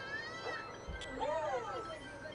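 Domestic cat meowing, a drawn-out call that rises and falls in pitch about a second in.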